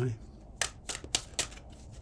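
A deck of tarot cards being shuffled: four sharp papery snaps about a quarter of a second apart.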